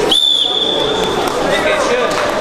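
A referee's whistle blown once, a steady shrill blast about a second long, stopping the action on the mat, over the chatter of a crowded sports hall.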